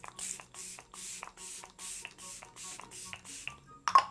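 Pump-bottle makeup setting spray (Tarte) misting onto the face: a quick run of about ten short hissing spritzes, roughly three a second.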